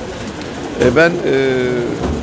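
Speech only: after a brief lull, a voice says "Ben" about a second in and holds the vowel as a long, steady hesitation sound.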